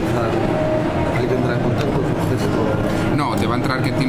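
Voices talking over a steady background rumble of a busy, noisy hall.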